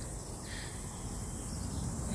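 Quiet outdoor background: a steady faint hiss with a low rumble underneath, and no distinct event.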